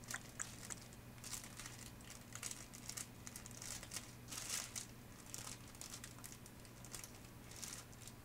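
Faint rustling and crinkling of a bag and papers being rummaged through, in short irregular rustles, over a steady low hum.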